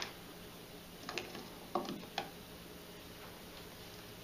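Three light taps and clicks of a pH meter's probe and plastic bottles being handled as the electrode is set into a small bottle of calibration solution, over low room hiss.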